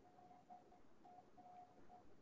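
Near silence: faint room tone on a video-call line, with a very faint thin tone that breaks on and off several times.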